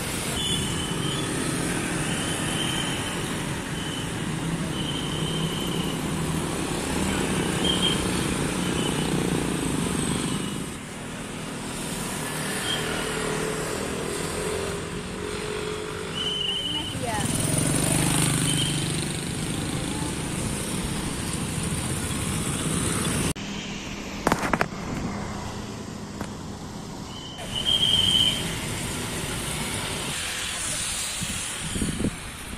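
Street ambience of road traffic passing steadily, with louder swells as vehicles go by, and indistinct voices. The background changes abruptly about two-thirds of the way through.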